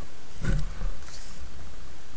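A paper page of an old book being turned: a short rustle with a soft low thud about half a second in, and a faint rustle just after.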